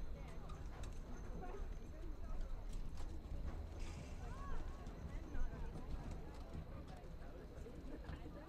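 Field sound of a soccer match: distant shouts and calls from players and the sideline, with scattered light knocks of feet and ball on the turf.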